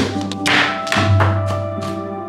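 Background music with sustained notes and a bass line, over which a knife chops on a plastic cutting board in several sharp, irregular taps.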